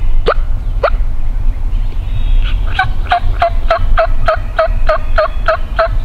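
Turkey yelping: a regular series of about a dozen yelps, about three a second, starting about two and a half seconds in. Two short rising call notes come near the start, and a steady low rumble runs underneath.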